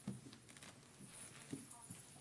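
A few soft footsteps and knocks in a large hall, one just at the start and two near the end, over faint murmured voices.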